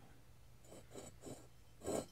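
Quiet room with faint handling noises as the camera and a polished brass fan canopy are moved in close by hand, and one louder brief rustle near the end.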